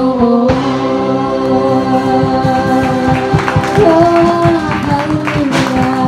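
Live praise and worship band playing: a woman sings lead into a microphone over drums, bass, electric guitar and keyboard, with a steady drum beat.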